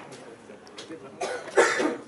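A loud, harsh shouted drill command on the parade ground, coming in short bursts in the second half.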